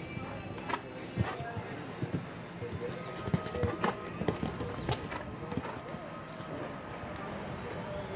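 Horse's hooves thudding on grass turf at a canter, irregular beats for the first five seconds or so as it takes a fence about four seconds in, over background voices and music.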